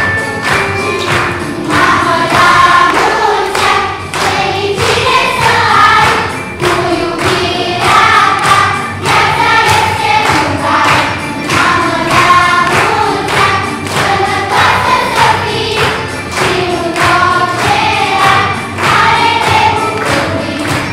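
Children's choir singing together over a steady rhythmic accompaniment.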